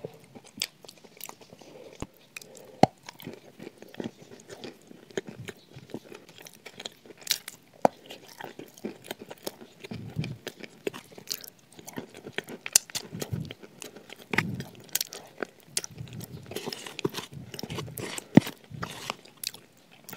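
Close-miked chewing and crunching of shortbread biscuits with chocolate cream spread, full of sharp crackling mouth clicks.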